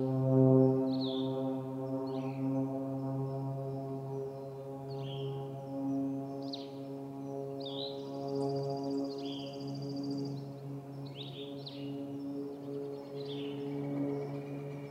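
Small forest birds calling, with short, high, falling notes every second or so and a buzzy trill about eight seconds in, over a steady low hum with overtones.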